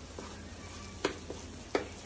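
A wooden spatula stirring thick bottle-gourd halwa in a steel kadhai over a gas flame, knocking sharply against the pan three times in the second half, over a low steady hum.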